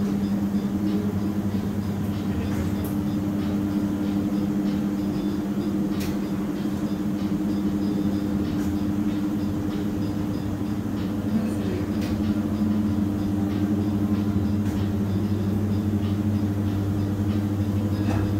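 Steady low mechanical hum, unchanging throughout, with a few faint clicks.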